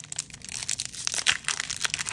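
A foil Pokémon Crown Zenith booster pack wrapper being torn open by hand along its top edge, a steady run of crisp crinkling and crackling.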